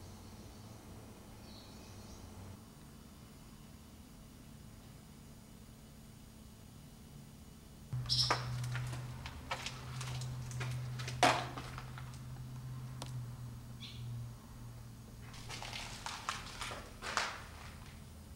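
Irregular footsteps crunching and knocking on a gritty, debris-covered floor in an empty building. They come in two spells, the first starting suddenly about eight seconds in over a low steady hum, the second near the end. Before that there is quiet room tone.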